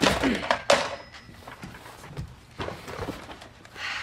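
A person clears their throat sharply, with dull thunks as they sit down on a chair.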